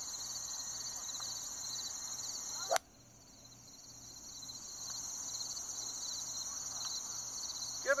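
A golf club striking a ball off the turf, one sharp crack about three seconds in, over the steady high chirring of insects.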